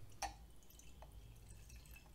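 Whisky being poured from a small bottle into a glass tumbler: a faint trickle with two small drip sounds, about a quarter second and about a second in.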